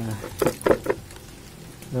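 Water splashing and sloshing in a bucket of freshly caught small fish and shrimp as its leaf cover is pulled off: a few short splashes within the first second, then quiet.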